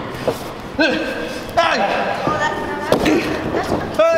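Wrestlers' bodies hitting the ring: several sharp thuds and slams on the ring, the loudest about one and a half seconds in, under steady shouting voices.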